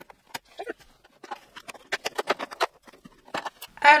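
Fingers picking at and prying open a perforated cardboard advent-calendar door: a run of irregular small clicks, taps and crinkles, busiest about halfway through.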